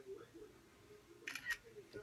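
A girl's voice murmuring faintly, under her breath, with two short hissy clicks about a second and a half in.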